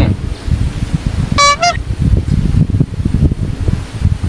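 A short vehicle horn toot, one brief beep about a second and a half in that steps slightly up in pitch at its end, over a loud, uneven low rumble.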